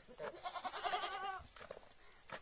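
A goat bleating once: a single wavering, tremulous call about a second long.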